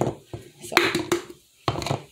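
Dry pancake mix shaken out of an upside-down glass mason jar into a plastic measuring cup, in three short bursts of rustling.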